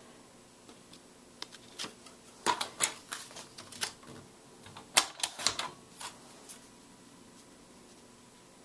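Sheets of scrapbook paper and cardstock being handled and shifted on a cutting mat: a scatter of light paper rustles and taps, in two busier clusters, one about two and a half seconds in and another about halfway through.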